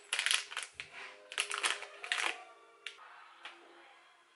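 A plastic sweet packet crinkling as it is handled, in a dense run of crackles for about two seconds, then a few single crackles.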